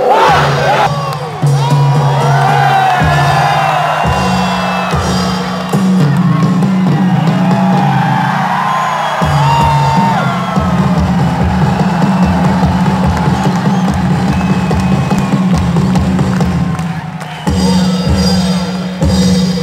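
Music played loudly over loudspeakers, with a steady bass line that shifts pitch every second or two, over a large stadium crowd cheering and whooping.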